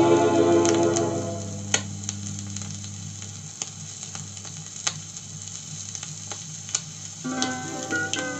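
A 1950s Soviet long-playing record on a portable record player: a held chord dies away in the first second or so, then the stylus runs through the gap between tracks with surface crackle, scattered clicks and a low steady hum. The next song starts about seven seconds in.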